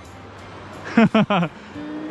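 Steady rush of a shallow river riffle over rocks, with a man's short laugh about a second in.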